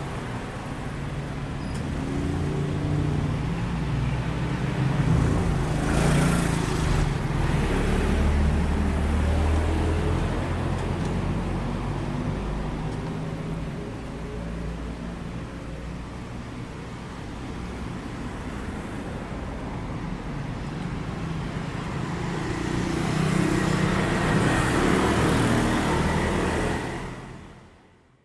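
Street traffic: car engines running and passing, with a low rumble that swells a few seconds in and again near the end, and a louder pass about six seconds in. The sound fades out at the very end.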